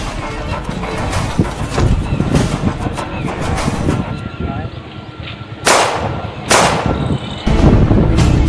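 Two gunshot sound effects, a little under a second apart, each with a short ringing tail, about two-thirds of the way in, over background music that comes back loud near the end.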